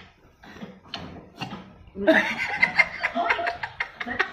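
People laughing: quiet at first, then breaking out loudly about halfway through.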